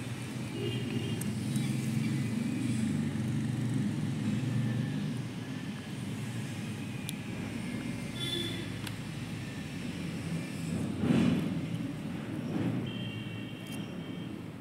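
Low rumble of road traffic passing, swelling over the first few seconds and again briefly with a louder pass about eleven seconds in.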